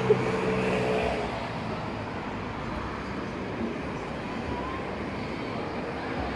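Steady road traffic noise, with a sharp click right at the start and a brief pitched drone in the first second.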